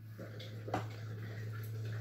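Trading cards being laid out and slid across a playmat by hand: faint rustling and one sharp tap about three quarters of a second in, over a steady low hum.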